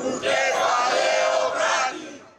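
A crowd of protesters chanting a slogan together in one long shouted phrase.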